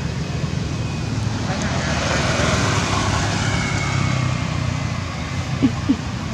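Motor vehicle engine and road noise running steadily, growing louder around the middle and easing again, as a vehicle passes.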